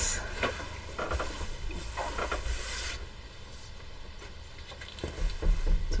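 Bolts of quilting fabric being shifted and laid down on a table: cloth rustling and soft knocks of the bolts, busiest in the first three seconds, then quieter with a few faint ticks near the end, over a low hum.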